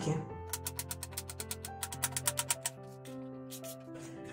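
Background music with sustained notes, with a fast, even run of light clicks at about eight a second that lasts about two seconds.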